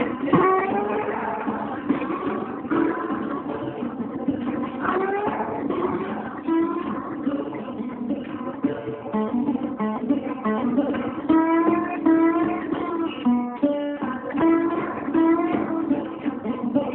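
Resonator guitar played as an instrumental blues break, with plucked strings and slide notes gliding up into pitch over a repeating bass pattern.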